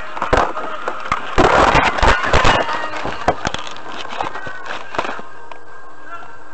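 Dashcam being knocked about inside a car: a dense run of clattering and knocking on the camera body, loudest about a second and a half in, then scattered knocks over a steady low hum.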